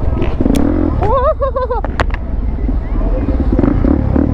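Suzuki DR-Z400SM's single-cylinder four-stroke engine running steadily while the bike is held in a wheelie. About a second in, a short wavering whoop rises over the engine, and a sharp click comes at about two seconds.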